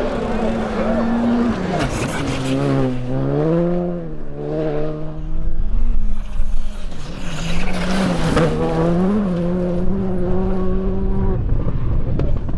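Rally car engine at high revs, its pitch dropping and climbing again as the car changes gear and slows for corners. Stretches of held, steady revs come in between.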